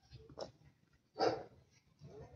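A dog barking twice, the second bark louder, a little over a second in.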